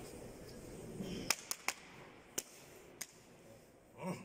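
Five sharp hand slaps spread over about two seconds: a coach smacking a weightlifter's back and shoulders to rouse him just before his attempt.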